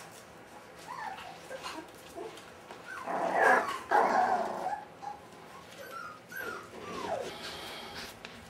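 Five-week-old Brittany puppies play-fighting, giving short high-pitched whines and yelps. The loudest stretch is a noisy burst about three seconds in, and a falling whine comes near the end.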